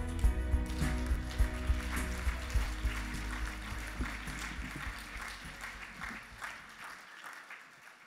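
The last chord of a live worship song rings out and decays, while the choir and congregation applaud. The clapping fades away toward the end.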